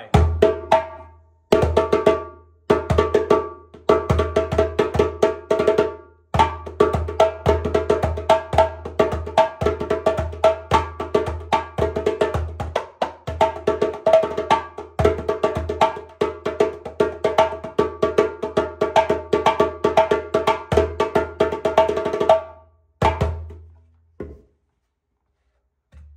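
A 12-inch Ghana djembe (the Tiger Eye) with a medium-thin skin played by hand in a fast rhythm, mixing deep bass strokes with ringing tone and slap strokes. The rhythm breaks briefly a few times, stops about 22 seconds in, and is followed by two lone strokes.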